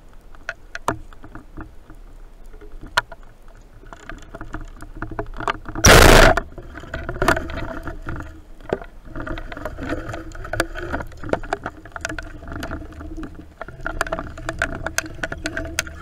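Underwater clicking and crackling, then a band-powered speargun firing about six seconds in, a short loud burst. It is followed by continued knocking and rushing noise underwater as the shaft's line runs out toward the fish.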